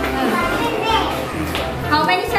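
Young children's voices chattering in a classroom, with background music playing under them.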